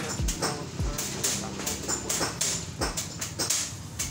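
Workshop noise: scattered clicks and knocks of hand-tool work with a few low thumps, over a pop song playing in the background.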